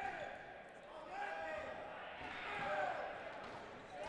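Players shouting in the distance, with dodgeballs bouncing and smacking on a hardwood court, all echoing in a large gymnasium.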